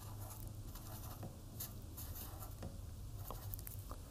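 Faint scratching of a felt-tip marker writing on paper, with a few light clicks from markers being handled and a low steady hum underneath.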